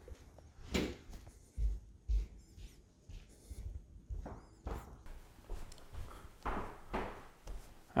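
Handling noise from carrying a cardboard box through a house: irregular soft footsteps, bumps and scuffs of the box against hands and camera, with the loudest knocks in the first couple of seconds.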